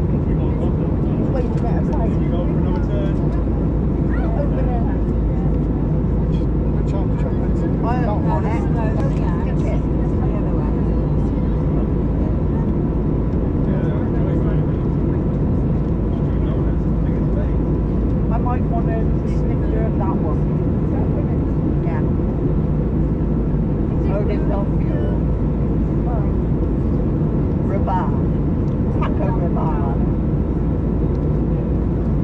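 Steady, deep cabin noise of an Airbus A320neo in flight: the even drone of its CFM LEAP-1A turbofans and the rush of air over the fuselage, unchanging in level.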